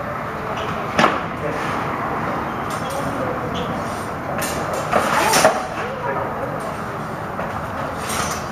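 Practice longswords clacking together in sparring: one sharp clack about a second in and a quick flurry of clacks around five seconds in, over steady background noise.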